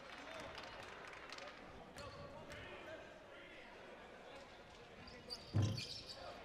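A basketball bouncing a few times on a hardwood gym floor over a low murmur of the arena crowd. A short shout comes near the end.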